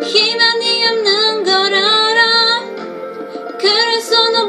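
A young woman singing a Korean-language ballad, in two phrases with a short pause for breath about three seconds in.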